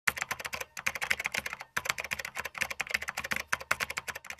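Rapid typing on a keyboard: quick runs of key clicks, about ten a second, broken by two brief pauses in the first two seconds.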